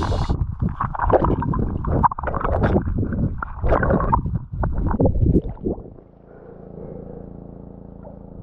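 Muffled underwater sound from a camera held below the surface: irregular bubbling and sloshing of water around the moving hands, giving way about six seconds in to a quieter steady low hum.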